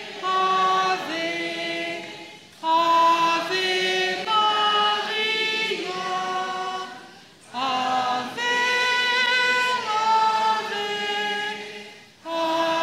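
A congregation singing the closing hymn of the Mass in held notes. The singing is broken into phrases by two short breaths, about two and a half and seven and a half seconds in.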